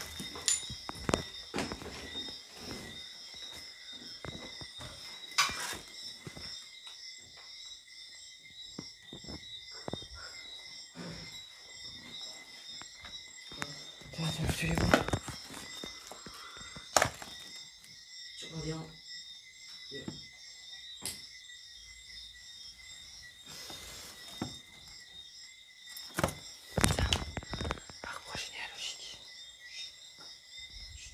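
A steady, high-pitched chorus of night insects, crickets or similar, throughout, with scattered sharp knocks and thuds of footsteps and handling on debris-strewn floors, the loudest a few single knocks, around the middle and near the end. Faint muffled voices come and go.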